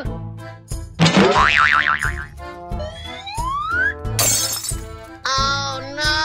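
Cartoon comedy sound effects over background music: a wobbling boing about a second in, a long rising whistle around three seconds, a short hissy burst just after four seconds, and a held chord near the end.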